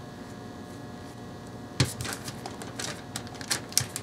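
Faint room tone, then about two seconds in a knock followed by a run of light taps and ticks as hands press a ball of polymer clay flat on a paper-covered worktable.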